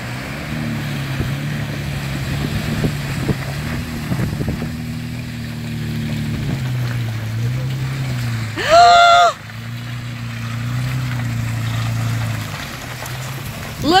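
Toyota FJ Cruiser's V6 engine pulling under load as the SUV wades through a muddy pond and climbs out, its note rising and falling with the throttle over water sloshing and splashing. A short, loud whoop from a person comes about nine seconds in.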